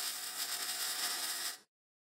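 Electric crackling sound effect, a steady hissing crackle that cuts off suddenly about a second and a half in.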